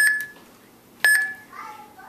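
Homemade Arduino rocket launch controller beeping as keys are pressed on its keypad during launch-code entry: two short, high beeps, each starting with a click, about a second apart.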